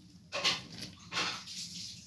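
A cat making two short, harsh vocal sounds about a second apart.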